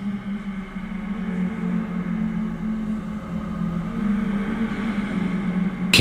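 A steady low synthesized drone from a TV underscore, with fainter higher tones swelling in and out twice.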